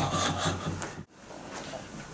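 Rustling and rubbing of clothing and handling noise as something is pushed into a trouser pocket. It cuts off abruptly about a second in, leaving quieter room sound.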